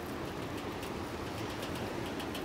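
Steady, faint background noise, even and without any distinct event.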